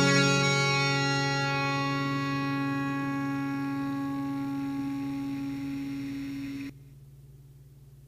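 Final electric guitar chord ringing out and slowly fading, then cut off abruptly near the end, leaving a faint low hum.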